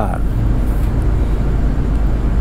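A steady low background rumble with a constant hum, filling a short pause between spoken words.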